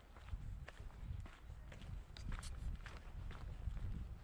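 Footsteps of a person walking on a pavement, a step about every half second, over a low rumble.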